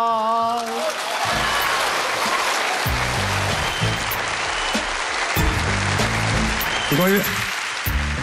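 A man's sung Huangmei opera line ends on a held, wavering note in the first second, then applause follows, with music playing underneath.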